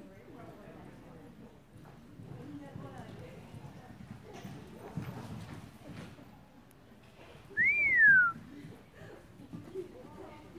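A person whistles once, a loud quick note that rises then falls, about three-quarters of the way through, over faint talk. It is the kind of whistle spectators give to cheer a reining maneuver.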